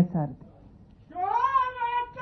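A single long, high-pitched shout from someone in the crowd. It starts about a second in, rises, then holds steady.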